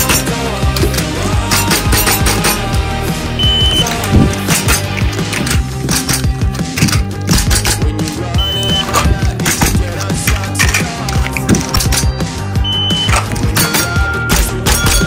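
Background music with a steady beat, over rapid clacking shots from a VFC Glock 19X gas blowback airsoft pistol converted to full auto. Three short high beeps sound at intervals of about four to five seconds.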